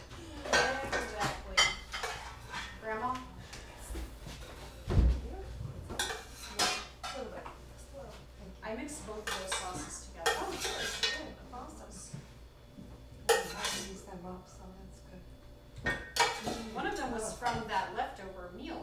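Serving utensils clinking and scraping in metal cooking pots and against plates, with cutlery clinking, as food is dished out at a table: a string of sharp, irregularly spaced clinks.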